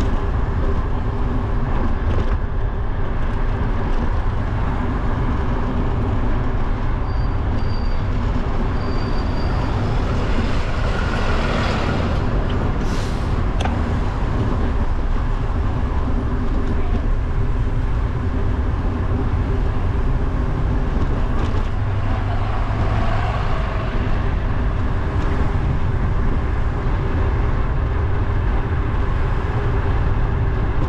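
Steady low wind rumble on an action camera's microphone while riding a bicycle, with road and traffic noise underneath. A louder passing sound swells and fades about eleven to thirteen seconds in, and a few short, faint high tones come around eight seconds.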